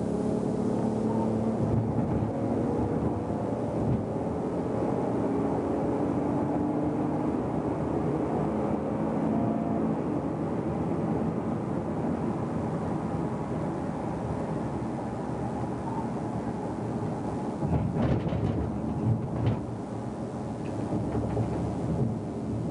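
Car engine and tyre noise inside a moving police patrol car on the freeway, the engine note rising slowly over the first several seconds as it speeds up. A few short knocks near the end.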